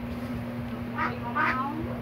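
A toddler gives two short, high-pitched squeals, the second louder, over a steady low hum.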